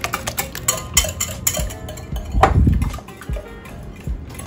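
Wire whisk beating egg batter in a glass mixing bowl: quick, irregular clicks and taps of the wires against the glass, with one louder thump about two and a half seconds in.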